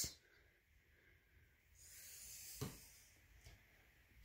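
Faint, mostly near-silent handling of a squeeze bottle of white school glue: a soft hiss for under a second as the bottle is squeezed to dab glue on paper, then one light tap.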